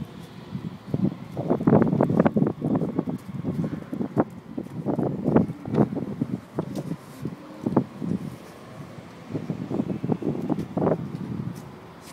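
Wind buffeting the phone's microphone in irregular gusts.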